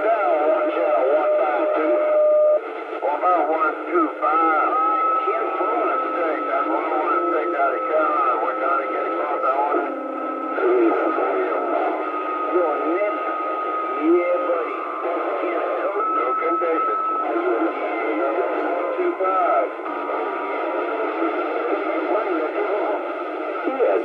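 CB radio receiving distant stations over skip on channel 28: several garbled voices talk over one another through the radio's thin, narrow-band speaker sound. Steady whistle tones come and go, typical of carriers beating against each other on a crowded channel.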